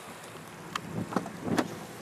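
BMW M3 engine idling, heard from inside the cabin as a steady low hum, with a few light clicks over it.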